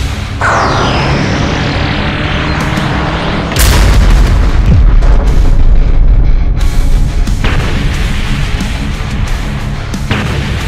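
Dramatic background music with a falling sweep just after the start. About three and a half seconds in, a deep boom sound effect comes in suddenly, and its low rumble runs on for about three seconds under the music.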